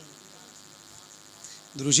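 Faint, steady high-pitched buzzing of night insects during a pause in a man's amplified speech. His voice comes back near the end.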